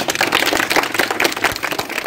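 A small group of people clapping, with many quick overlapping claps in welcome.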